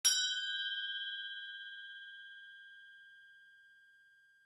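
A single bright bell-like chime struck once as the end card appears, ringing out and fading away over about three and a half seconds.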